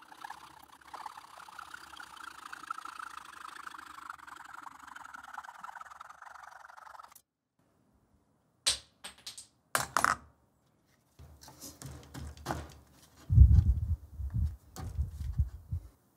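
A wooden part being forced into place on the marble machine. A steady scraping rub lasts about seven seconds. After a short silence come a few sharp knocks, then a run of low, heavy thumps near the end as the part is pushed home.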